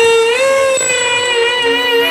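A woman's voice singing a Baul song, holding one long note with a slight waver.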